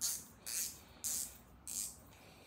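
Spinning reel's front drag knob being twisted tight in short turns, each turn giving a quick raspy burst of clicks, four of them about half a second apart.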